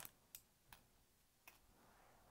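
Near silence broken by about four faint, light clicks spread over two seconds: metal push pins ticking as they are picked up with a magnet and set onto foam core board.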